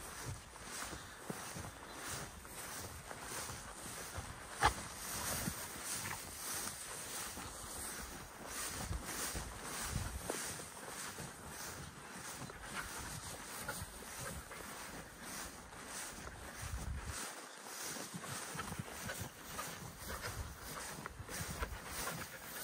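Footsteps swishing through tall grass at a steady walk, with wind rumbling on the microphone; faint overall. One sharp click about four and a half seconds in.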